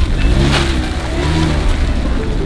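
Mazda MX-5 roadster's four-cylinder engine accelerating as the car pulls away from a standstill, its note rising in pitch twice as it revs.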